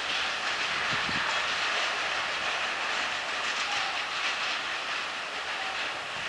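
Loaded freight wagons rolling away along the track: a steady noise of steel wheels on rail, with a couple of low knocks about a second in.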